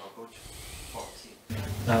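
A short pause in speech: faint room tone with a couple of small soft sounds, then a man's voice starts speaking about one and a half seconds in.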